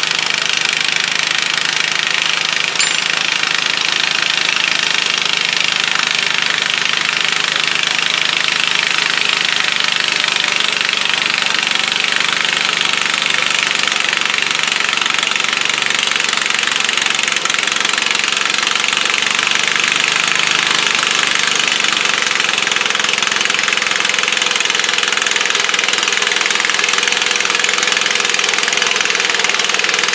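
Modified pulling garden tractor's engine running loud and steady under load as it drags a weight-transfer sled down the dirt track.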